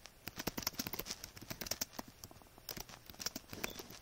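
Typing on a computer keyboard: quick, irregular key clicks, with a short pause a little over two seconds in.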